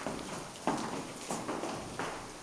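Footsteps going down a stairwell's stairs, an even tread of about one step every two-thirds of a second, four steps in all.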